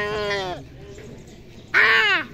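A child's voice imitating a cat's meow: a held, pitched call that ends about half a second in, then a loud, short call that rises and falls in pitch near the end.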